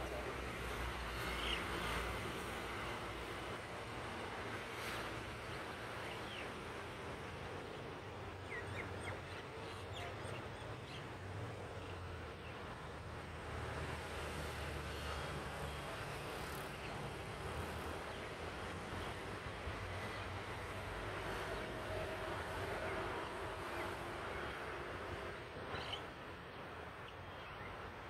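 Steady outdoor background noise with a low rumble that eases off about two-thirds of the way through, and a few faint, short bird chirps scattered through it.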